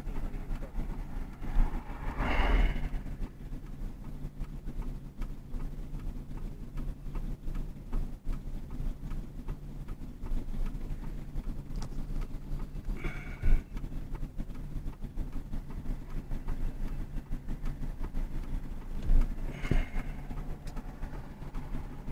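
Car engine idling with a steady low hum, heard from inside the cabin, with three brief louder noises over it.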